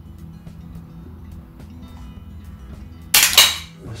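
Vise-grip locking pliers on a seized screw give one sharp metallic clack about three seconds in, as they come off the screw head. Before that, only faint ticks of the pliers working.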